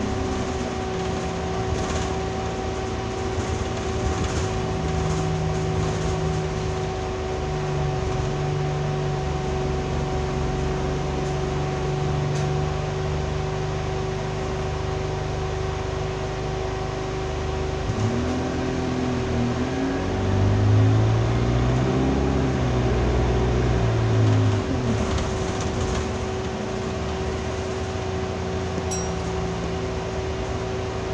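Inside an Alexander Dennis Enviro200 single-deck bus under way: the diesel engine runs steadily, then past the middle its pitch climbs and falls over several seconds as it pulls. A steady whine holds underneath throughout.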